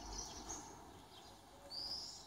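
Faint, high-pitched bird chirps: short calls near the start and another brief call near the end, over a quiet background.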